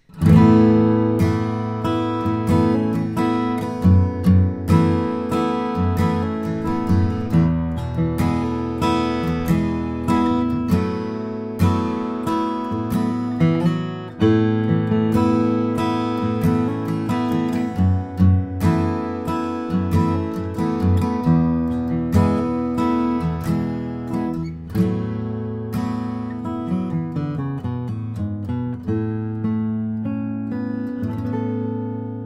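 2009 Bourgeois DB Signature dreadnought acoustic guitar, Adirondack spruce top with Madagascar rosewood back and sides, played in a steady stream of strummed chords and picked notes. The bass is round and full, with no mud.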